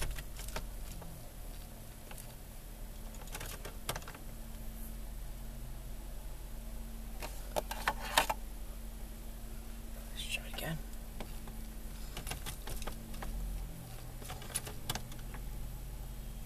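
2002 Dodge Caravan engine idling steadily, heard from inside the cabin as a low hum. Light clicks and taps come in small clusters every few seconds, the loudest about eight seconds in.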